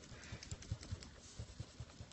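MONO non-PVC plastic eraser rubbing over pencil lines on paper: faint, quick, uneven scrubbing strokes.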